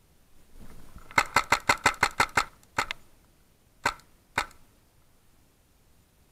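Paintball marker firing: a quick string of about eight shots, then a pair, then two single shots half a second apart, after a short rustle of movement.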